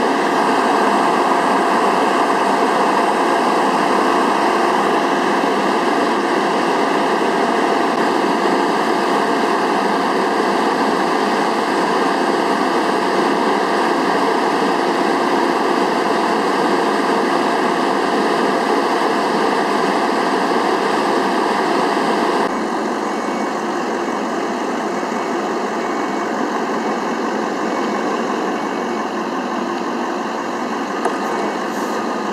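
Emergency-vehicle engines idling, a loud, steady mechanical drone with no break. About 22 seconds in it becomes quieter and duller.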